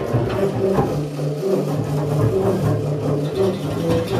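Freely improvised music for tenor saxophone, bowed double bass and archtop guitar: low sustained drone-like tones held and broken off in long segments, with shifting higher notes above and no steady beat.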